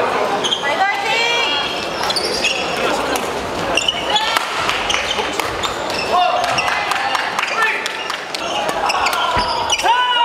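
Badminton doubles rally on an indoor court: rackets striking the shuttlecock in quick exchanges, with sport shoes squeaking sharply on the wooden hall floor, all ringing in a large hall.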